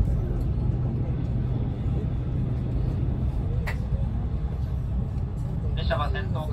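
Steady low rumble of an E353-series limited express train running, heard from inside the passenger car, with a single sharp click about three and a half seconds in.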